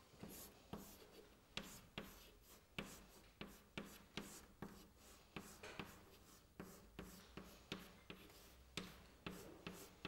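Chalk on a blackboard: a faint series of short taps and scrapes, about two a second, as words are written by hand.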